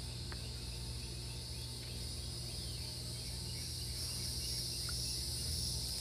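Steady high-pitched insect chorus in the background, over a low steady hum.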